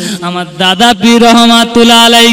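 A man's voice chanting in the melodic, sung style of a waz sermon, holding a long steady note from about half a second in.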